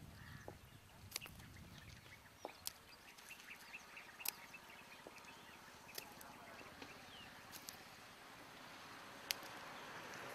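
Very quiet outdoor ambience with faint distant bird chirps and about half a dozen sharp clicks scattered through it.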